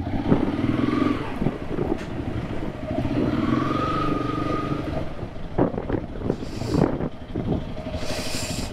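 Single-cylinder Honda CRF300 motorcycle engine running at low speed as the bike is ridden slowly and brought to a stop, its note rising a little in the middle. A few sharp knocks come in the second half.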